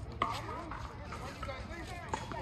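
A tennis ball struck by a racket: one sharp pop just after the start.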